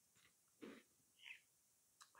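Near silence: room tone, with two faint, brief soft sounds, one about half a second in and one just over a second in.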